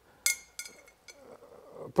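Antique Russian under-the-arch carriage bell giving a single light clink about a quarter second in, a brief metallic ring of several high tones that dies away within half a second, followed by a few faint clicks as the bell is handled.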